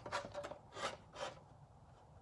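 About four faint, light ticks and scrapes of the molded air box piece being handled and shifted against the car in the first second and a half.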